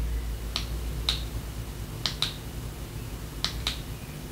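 Six short, sharp clicks in three close pairs, spread over a few seconds, over a faint steady low hum.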